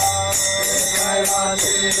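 Devotional group chanting of a mantra (kirtan) in unison, with small brass hand cymbals (karatalas) ringing along and a brass handbell ringing steadily.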